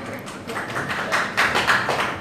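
A quick run of irregular taps and knocks, getting denser and louder in the second half.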